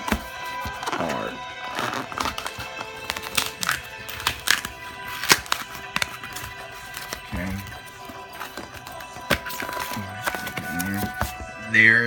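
Packing tape being peeled off a cardboard shipping box by hand, with irregular sharp clicks and crackles from the tape and cardboard, over steady background music.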